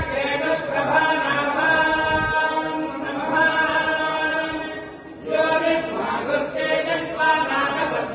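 Temple priests chanting Vedic mantras together in a steady, held recitation, with a short break for breath about five seconds in.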